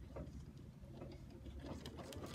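Baby Lock Visionary embroidery machine stitching a quilting pattern, heard faintly as a low hum with light, irregular ticks.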